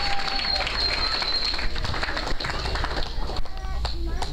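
Audience applauding, with voices mixed in and a steady high tone over the first second and a half.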